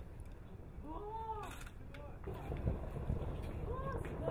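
Short vocal calls, each rising then falling in pitch, come about a second in and again near the end, over a steady low rumble.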